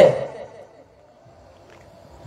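A man's voice through a handheld microphone and PA finishes a phrase and fades away over about half a second, then a pause with only low, steady background noise.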